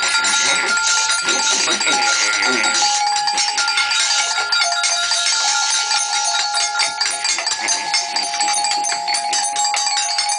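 Live improvised noise music: dense crackling, hissing noise full of small clicks, under a few held tones that shift about seven seconds in, with wordless voices mixed in near the start.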